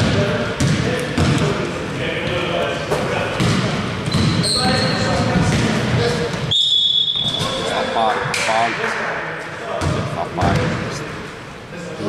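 A basketball bouncing on a wooden gym floor during play, with sneakers squeaking and players' voices echoing in a large hall. A steady whistle blast, likely the referee's, sounds for about a second a little past the halfway point.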